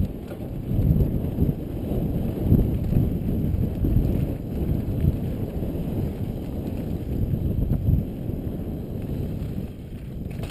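Wind buffeting a helmet-mounted camera and the rumble of a mountain bike's tyres on dry dirt singletrack at riding speed: an uneven, continuous low rush that swells and eases as the bike moves over the trail.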